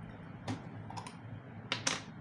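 A few light, sharp clicks and knocks from a vinegar bottle being handled and opened over a plastic bowl, the loudest pair near the end.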